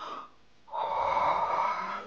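A loud, breathy gasp or snarl lasting just over a second, starting under a second in.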